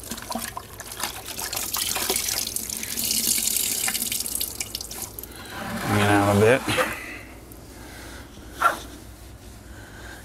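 Water splashing and dripping as a small microfiber towel is dunked and squeezed out over a plastic bucket of rinseless wash solution, through the first five seconds.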